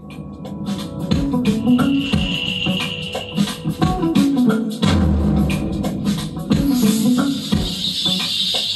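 Music with drums played loudly through high-power PA concert speakers as a listening test, its level climbing over the first second and then holding steady.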